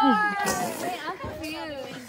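A person's high-pitched, drawn-out squeal right at the start, falling in pitch, among a group's overlapping chatter and laughter.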